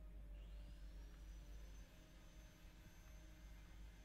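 Near silence: room tone with a steady low hum, and a faint high tone that rises and then holds from about half a second in.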